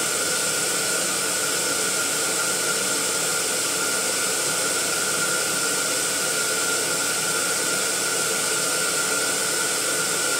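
Electric air pump running steadily, a hiss of rushing air with a thin steady whine, as it inflates a row of latex balloons.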